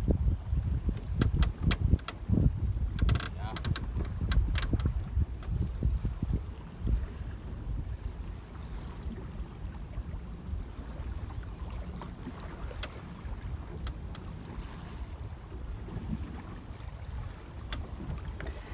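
Wind buffeting the microphone in gusts, with chop slapping against a small boat's hull. There are a few sharp knocks in the first five seconds, and the rumble settles after about seven seconds.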